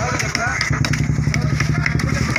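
An engine idling steadily nearby, its low rapid pulse running through, with voices and scattered clicks over it.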